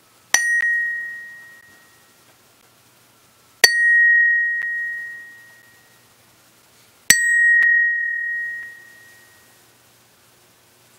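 Home-cast aluminium bell struck three times with a hammer, about three and a half seconds apart. Each strike is a bright ding that settles into one clear, high, steady ring and fades over about two seconds, with a faint second tap just after. The bell rings true.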